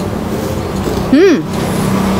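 A woman's brief rising-and-falling "mmm" about a second in as she chews a piece of jalebi, over a steady low background hum.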